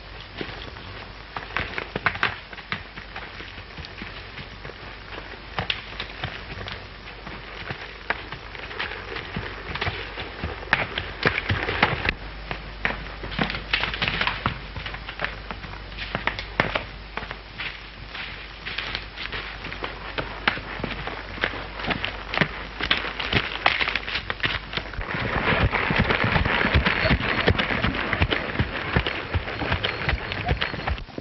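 A horse's hooves moving through dry leaves and brush, with irregular crackling and snapping of twigs. About 25 seconds in it turns into a louder, quicker run of galloping hoofbeats.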